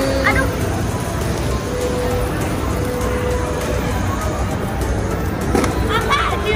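Background music over the steady noise of a busy shopping-mall hall, with brief distant voices.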